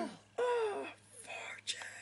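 Speech only: a voice drawing out the words 'of Fortune' in a high, sing-song pitch, then soft breathy sounds.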